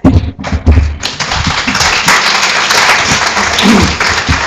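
A few low thumps, then a congregation applauding, the clapping starting about a second in and keeping up steadily.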